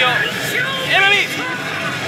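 Steady, loud din of a pachinko parlour, with a short voice about a second in.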